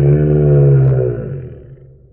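A man's shouted words slowed down to a very deep, drawn-out voice, one long held sound that fades out near the end.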